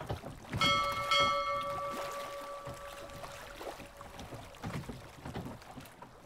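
A chime rings out about half a second in and fades away over a couple of seconds, over a steady hiss of wind and water.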